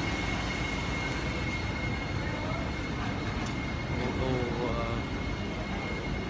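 Truck engines running steadily, with a constant high-pitched whine over the rumble and faint voices in the background.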